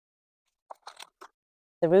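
A few brief, faint rustling scrapes as a salvia seedling is worked out of its plastic nursery pot, between moments of near silence; a woman's voice starts near the end.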